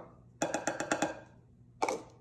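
A small plastic container knocked rapidly against a glass mixing bowl to shake out the last of the baking soda: a quick run of about eight light taps, then one sharper click near the end.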